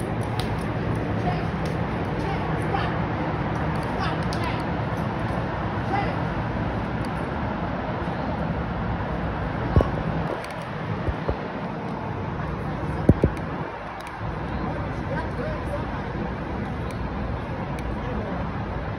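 Indistinct voices over a steady outdoor background noise with a low hum. There are sharp knocks about ten and thirteen seconds in.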